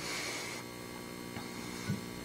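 Steady electrical mains hum with faint hiss on the meeting-room microphone and audio system, with a short hiss in the first half-second and a soft spoken "so" near the end.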